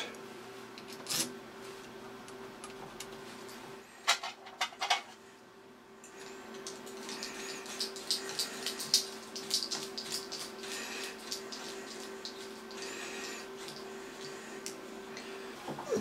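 Small metallic clicks and light scraping of a lathe compound slide being reassembled by hand: cap head screws and the slide's feed screw being fitted. A few sharper knocks come about four to five seconds in, and a faint steady hum runs underneath.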